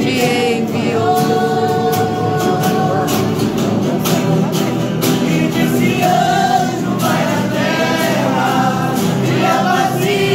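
A group of voices singing a Christian worship song together, accompanied by strummed guitars.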